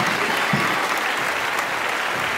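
A group of children clapping and shouting. A couple of short low didgeridoo toots sound in the first half second.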